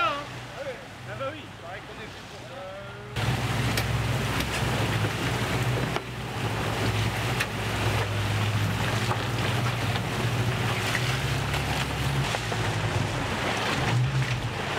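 A boat's engine hums steadily beneath rushing water and wind noise on the microphone. About three seconds in, the rushing noise jumps up sharply and stays loud. Crew voices are faintly heard.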